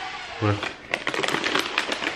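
Crunchy Goldfish crackers being chewed close to the microphone: a quick, irregular run of crackling clicks through the second half.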